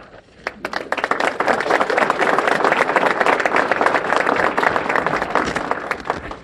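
Audience applause: many people clapping, starting about half a second in and tailing off near the end.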